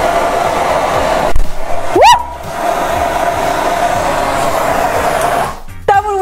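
Cornstarch dust blown through a propane torch flame and igniting: a steady rushing noise of burning dust, broken by a thump, with a short rising whoop about two seconds in, and rushing again until it stops shortly before the end.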